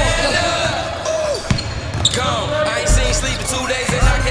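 Basketballs bouncing on a hardwood gym floor, with scattered sharp thuds, heard alongside voices and a hip-hop music track whose bass drops out and comes back in about three seconds in.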